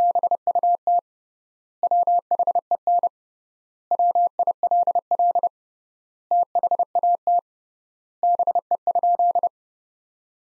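Morse code sent as a single steady beep tone at 30 words per minute, keyed in dots and dashes in five word groups with long gaps between words (three times the normal word spacing), spelling out the repeated sentence "But when will that be?".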